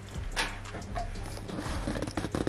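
Drink bottles being handled on a tabletop as one is picked up: a light knock about half a second in, then a quick run of knocks and rattles near the end.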